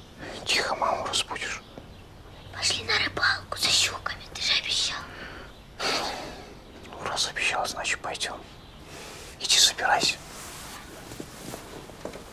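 Whispered speech: several short hushed phrases with pauses between them.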